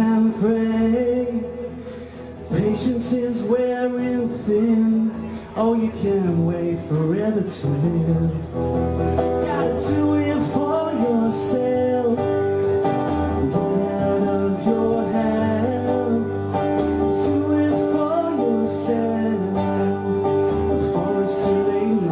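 A man singing while strumming an acoustic guitar, a live solo song amplified through the venue's PA.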